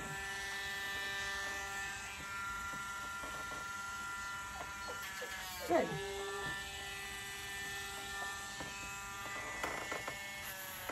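Dremel rotary tool running with a steady high whine as it is held to a puppy's toenails to grind them down.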